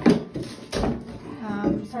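Crowbar and hammer knocking against the wooden underlayment board as it is pried up off the floor: two sharp knocks about three quarters of a second apart, near the start.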